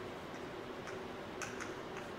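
Chalk tapping and scratching on a blackboard as words are written: a run of short, irregular clicks, the sharpest about one and a half seconds in, over a steady low room hum.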